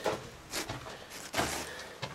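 A few footsteps on stony, gravelly ground, roughly a second apart, the last with a dull thump.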